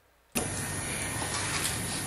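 Dead silence, then about a third of a second in a steady hiss of background noise cuts in suddenly and holds: the room tone and recording noise of the press-conference audio.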